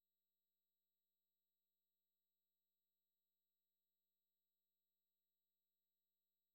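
Silence: the closing music has ended and the soundtrack is empty.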